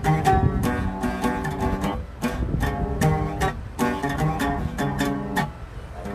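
Oud being plucked: a run of notes with sharp strikes, thinning briefly about two seconds in and again near the end.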